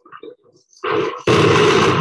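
Explosive demolition charges going off in a tower block. A few small pops come first, then a loud blast a little under a second in, then an even louder, longer blast from just past halfway.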